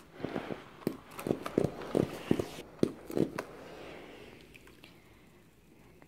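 Hamilton Beach steam iron on a towel sputtering, with a run of irregular pops and knocks over a soft hiss, then a hiss that fades away. It is spitting out black scale deposits loosened by vinegar cleaning.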